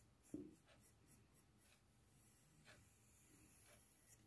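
Faint pencil scratching on paper as a curved line is drawn, barely above near silence, with a brief soft sound just after the start.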